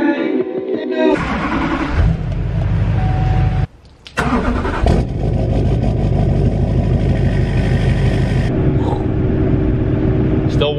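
Chevrolet Duramax V8 turbodiesel starting up: it catches about a second in, then runs steadily with a deep, even sound. It drops out briefly about four seconds in, then resumes.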